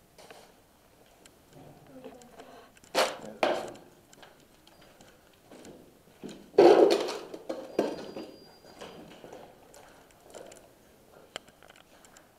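Footsteps scuffing and crunching over a debris-strewn concrete floor, with brief indistinct voices. A few louder bursts stand out, two about three seconds in and the loudest just past halfway.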